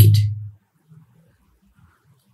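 A man's voice finishing a word, then near silence with only faint room tone.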